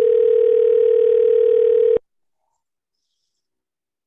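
Telephone ringback tone of an outgoing call: one steady two-second ring that stops sharply about two seconds in. It means the line is ringing at the called end and has not been answered.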